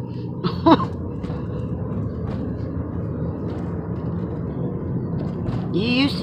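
Car engine and road noise heard from inside the cabin while driving, a steady low hum.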